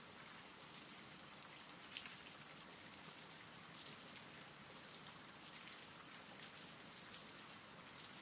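Faint, steady rain from a recorded rain-sounds background track: an even patter of drops.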